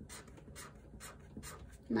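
Felt-tip marker drawing short lines on paper: a quiet series of quick scratchy strokes, about five in a row, one every third of a second.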